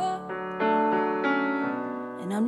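Band music without vocals: sustained, keyboard-like chords held and changed a few times.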